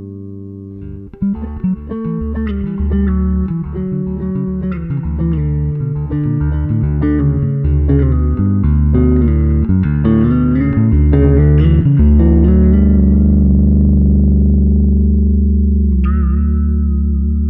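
Electric bass guitar played fingerstyle: a held note fades, then about a second in a busy run of plucked notes begins. Near the end it settles on a long low note left ringing.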